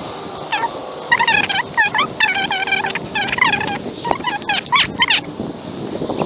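A bird giving a quick run of loud calls from about half a second in until about five seconds, one call after another with short gaps.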